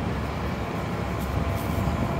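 Steady street traffic noise with the low rumble of city transit buses running nearby.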